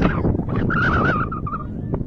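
Wind rumbling on the microphone of an outdoor field, with a high-pitched, wavering shout from about half a second in to near the end, like a young player or spectator yelling.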